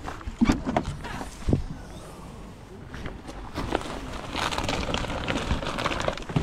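A few clicks and knocks as the Volkswagen Golf's tailgate is opened, then rustling of woven plastic IKEA bags being handled, growing louder over the last couple of seconds.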